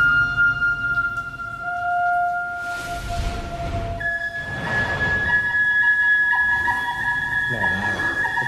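Chinese dizi bamboo flute playing a slow melody of long held notes, stepping up to a higher note about halfway through. Two brief swells of rushing noise rise beneath it.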